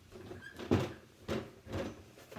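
Knocks and scrapes from a wooden-framed whiteboard easel being gripped and shifted. Several sharp knocks, the loudest about three quarters of a second in and two more in the second half.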